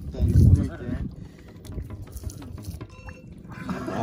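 A short burst of voice near the start, then faint splashing and sloshing of seawater around a small wooden outrigger boat.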